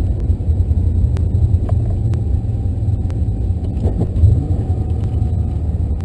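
Low, steady rumble of a 2009 Mustang GT's 4.6-litre V8 heard from inside the cabin as the car rolls slowly, with a few faint clicks over it and a brief louder swell about four seconds in.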